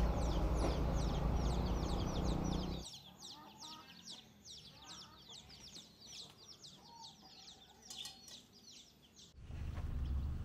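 Chickens calling: a steady run of short, high, falling chirps, several a second, with a few lower clucks. For the first three seconds they sit under a loud low rumble that cuts off suddenly.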